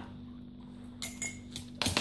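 Light clicks and clinks from a cup of dog treats being handled: one small click about a second in and a louder quick cluster near the end as the cup is set down. A faint steady hum lies underneath.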